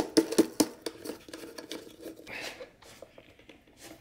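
Light clicks and rattles of hard plastic being handled: a snowmobile glove-box console lid with a USB outlet fitted into it. The clicks come in a quick run in the first second, then a few scattered ones.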